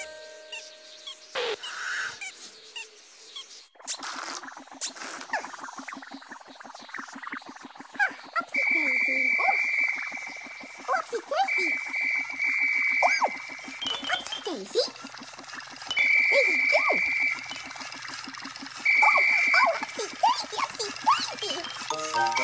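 Whimsical sound effects of the Pinky Ponk airship: a low, rapid pulsing buzz under many short chirping, sliding squeaks. From about eight seconds in, high held whistle tones come and go several times.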